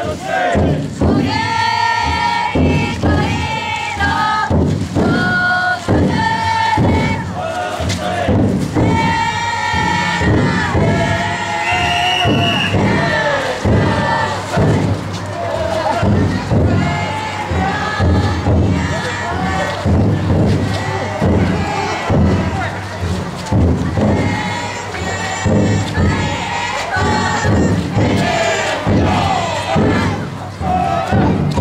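Futon daiko float bearers chanting and shouting together in a group. A large drum beats in a steady rhythm underneath.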